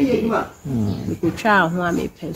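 A woman speaking in a steady run of talk, with a short pause about half a second in.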